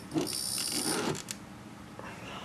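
A few light clicks from a hand working the controls of a mobile ham radio, with a faint high-pitched whine for about the first second.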